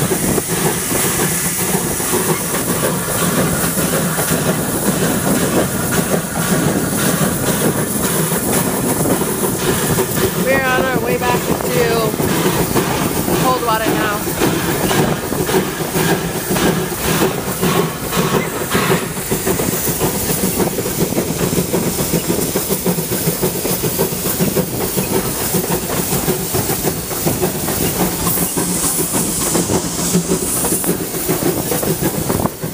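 Small steam locomotive running along the track: a steady hiss of steam with the wheels clicking over the rail joints.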